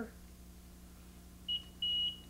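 Research Electronics CPM-700 countersurveillance receiver in monitor mode sounding its high, steady alert beep. The beep starts about one and a half seconds in, breaks briefly and comes back. It signals that the unit has picked up a nearby transmitter above its set RF threshold.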